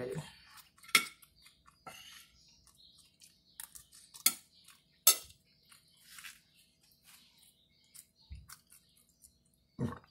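A metal fork clinking and scraping on a plate: a few sharp clinks with soft scrapes and eating noises between them.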